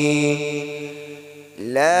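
A single male voice reciting the Quran in melodic tilawat style through a microphone. The long held note at the end of a verse trails off over the first second and a half, then the next verse begins with a rising glide in pitch.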